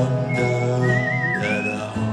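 A person whistling a melody over acoustic and electric guitars; the whistle wavers on one note, then slides up in pitch about a second and a half in.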